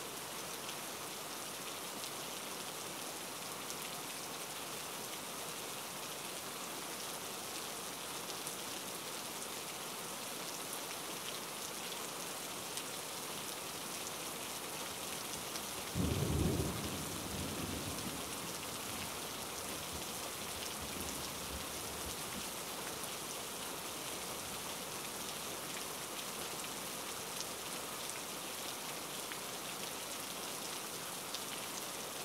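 Steady rain, with one low roll of thunder about halfway through that dies away over a couple of seconds.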